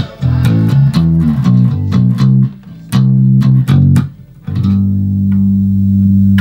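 Electric bass guitar playing a melodic plucked riff, a keyboard line transposed to bass: groups of short notes with two brief pauses, ending on a long held note from about four and a half seconds in.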